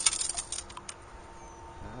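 A quick run of light clicks and rattles in the first second, then quieter: small finds and pebbles shifting in a metal mesh sand scoop.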